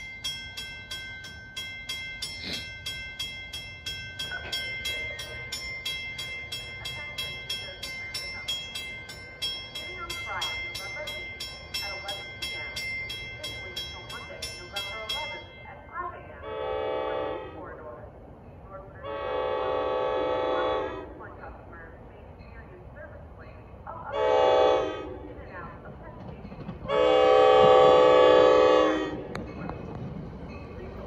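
A grade-crossing bell ringing rapidly, stopping suddenly about halfway through. Then the horn of an approaching NJ Transit train, led by Comet V cab car #6072, sounds four blasts (long, long, short, long), the standard grade-crossing warning, with the last blast the loudest.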